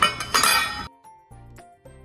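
Stainless steel container lid clinking sharply as it comes off, then a loud metallic clatter lasting about half a second that cuts off suddenly; soft background music follows.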